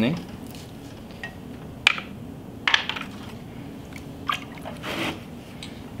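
Wet clay being pressed and patted by hand on a potter's wheel head. There are a few short, sharp pats and wet squishes, spaced about a second apart, over a faint steady hum.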